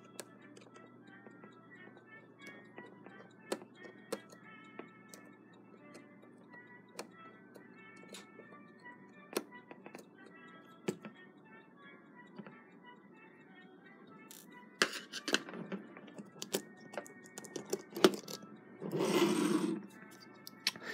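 Scattered small metallic clicks and scrapes of a screwdriver on the steel plate and screws of a Westclox clock movement as the main bridge screws are backed out. Louder clicks and handling noise come in the last few seconds as parts are lifted out, over faint background music.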